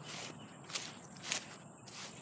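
Footsteps walking across a grassy lawn strewn with fallen leaves, with two sharper steps in the middle.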